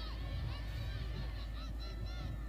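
Faint field sound of lacrosse players calling out to one another during play: many short, high shouts overlapping at a distance.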